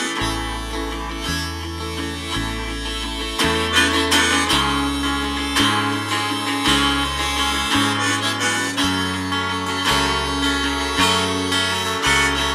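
Harmonica solo played over strummed guitar, with a low bass line changing note about once a second.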